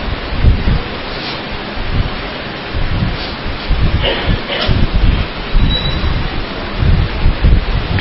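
Rustling and irregular low thumps of handling noise on the microphone over a steady hiss.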